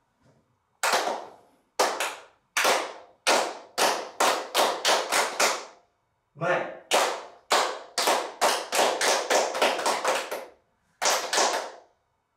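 A small group of children clapping their hands together once on each cue, about twenty single group claps in all. They come in two runs that speed up to about three claps a second, with a short pause near the middle and another before two last claps near the end.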